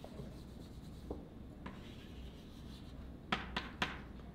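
Chalk writing on a blackboard: a few faint scratching strokes, then a quick run of several sharp chalk taps and scrapes near the end, the loudest sounds here.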